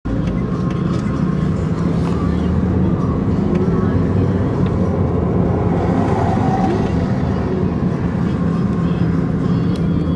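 Steady engine and road noise heard from inside a moving road vehicle, a continuous low rumble with a steady hum.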